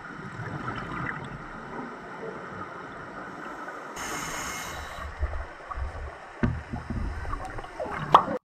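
Underwater sound picked up by a camera in its housing: a steady murky water hiss, with irregular gurgling bursts of scuba exhaust bubbles and a few thumps in the second half.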